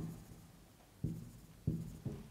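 Marker writing on a whiteboard, with two short squeaks of the marker tip, about a second in and near the end.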